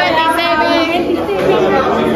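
Speech only: several people chattering over one another, with a woman's voice close to the microphone.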